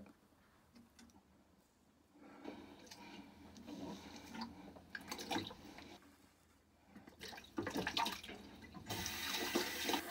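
Water running from a bathroom tap into the sink in two spells, the first starting about two seconds in and the second, brighter one after a short pause past the middle.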